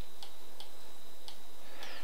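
A few soft, irregularly spaced computer mouse clicks over a steady hiss with a faint thin high tone, as vertices are selected and dragged.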